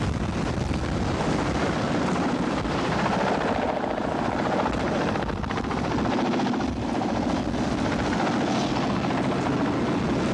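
Tandem-rotor helicopter flying overhead, a steady rotor beat throughout.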